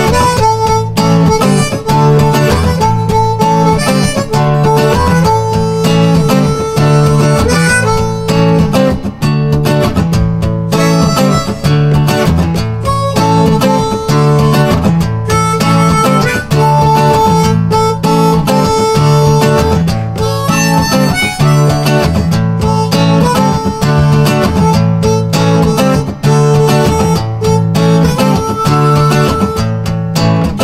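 Harmonica solo over a strummed acoustic guitar in an instrumental break between verses. The harmonica plays repeated held notes over a steady strumming rhythm, with no singing.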